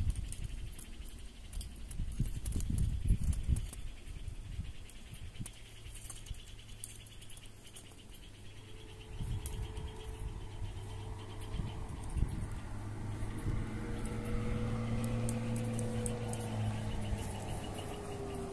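A motor vehicle's engine comes into hearing about halfway through and grows louder, its pitch rising slightly and then dropping as it goes by. A few dull knocks sound in the first few seconds.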